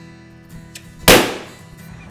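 A balloon bursting with a single sharp bang about a second in, over soft background music.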